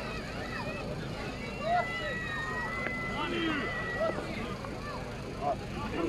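Scattered voices and chatter of a watching crowd, with a steady low rumble underneath. A held high tone sounds for about two seconds midway.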